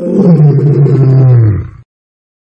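A lion roaring: one long roar that falls in pitch and cuts off just before the end.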